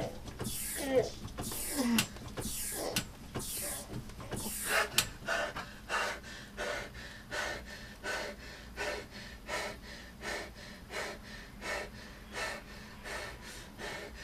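A man panting hard after a Tabata interval on a rowing machine: loud gasping breaths for the first few seconds, then fast, even panting at about one and a half breaths a second that eases slightly toward the end. A sharp click comes about five seconds in.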